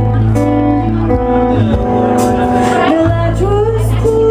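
A live pop band playing: strummed acoustic guitar and electric guitar over a steady low part, with a woman's singing voice gliding through held notes near the end.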